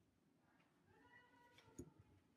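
Near silence: room tone, with a very faint thin pitched sound in the second half and a soft click near the end.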